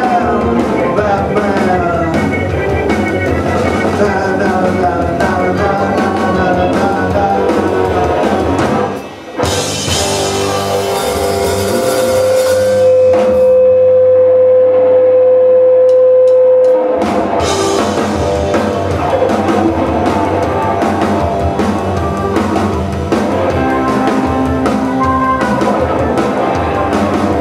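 Live rock band playing: electric guitars, drum kit and organ together. About nine seconds in the band drops out briefly, then a single note is held for several seconds before the full band crashes back in around seventeen seconds.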